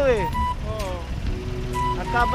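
Low, steady rumble of a motorcycle riding in city traffic, under a voice and background music; at the start a pitched sound slides down.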